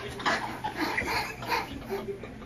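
Canada goose honking in a quick run of short calls, five or six in two seconds, as it goes for a man.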